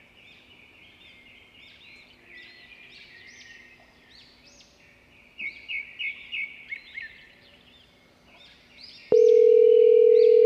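Small birds chirping and singing over and over, with a faint steady hum beneath. About nine seconds in, a loud steady telephone tone cuts in abruptly as a call is placed on a mobile phone.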